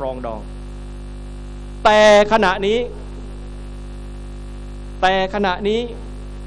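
Steady electrical mains hum, a low buzz with a stack of overtones, running under a man's amplified speech, which breaks off for about two seconds midway.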